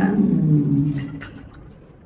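A woman's voice holding a drawn-out final vowel that fades away over about a second, then a short pause with only faint room tone.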